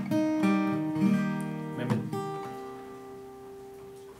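Crafter acoustic guitar with a capo at the third fret playing the open C chord shape: the chord is sounded a few times in the first two seconds, then the last one rings out and slowly fades.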